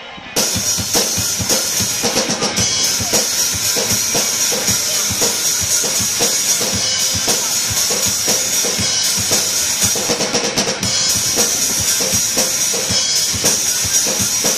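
Acoustic drum kit played live: bass drum, snare and cymbals in a fast, busy pattern that comes in abruptly about half a second in and keeps going without a break, the cymbals ringing throughout.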